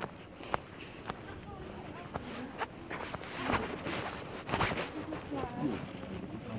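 Footsteps on brick street paving, a sharp step about every half second at first, with indistinct voices in the background through the second half.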